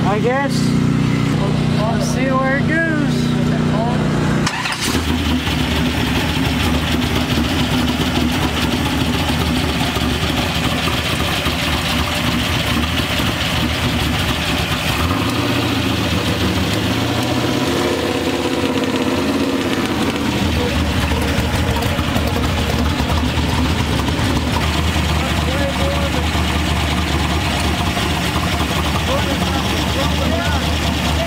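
Carbureted truck engine, fitted with a Holley carburetor and nitrous kit, idling steadily with the intake scoop off while its ignition timing is checked with a timing light. Its note shifts briefly about halfway through, then settles back to idle.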